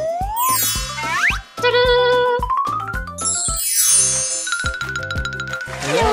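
Upbeat children's background music with a steady beat. Cartoon sound effects sit over it: rising boing-like glides in the first second, and a twinkling sparkle sweep around four seconds in. The music drops out for a moment about a second and a half in.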